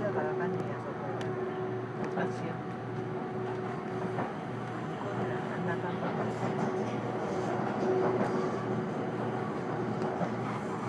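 Inside a JR 373-series electric limited express train running along the line: steady running noise from wheels on rail, with a constant hum and a few light clicks.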